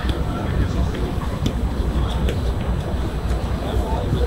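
A few sharp taps of a football being kept up with the feet, over a steady low rumble and indistinct voices.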